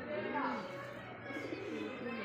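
Domestic pigeons cooing: a run of low, rolling coos in the first second, followed by softer cooing.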